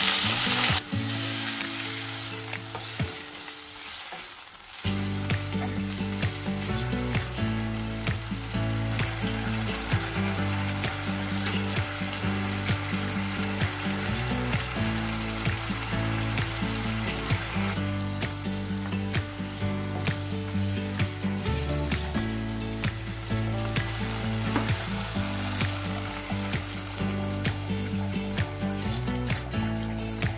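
Beef and potatoes frying in a pot with tomato paste: a steady sizzle with small crackles, and a wooden spoon stirring. A brighter burst of hissing comes right at the start as water hits the hot pan. Soft background music with slow, steady bass notes plays underneath from about five seconds in.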